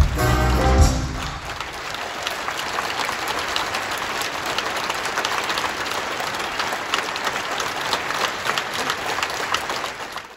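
A live band finishes the song with a last loud hit about a second in, then the theatre audience applauds steadily.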